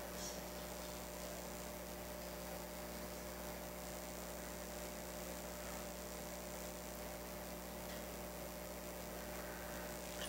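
Steady electrical mains hum with a faint hiss underneath, the room tone of the microphone and recording system, unchanging throughout.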